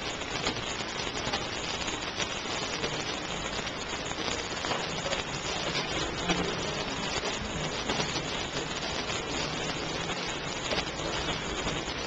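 Steady, even background hiss with no speech, unchanged throughout.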